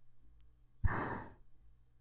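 A man's single short sigh, a breath of about half a second starting sharply about a second in and fading away.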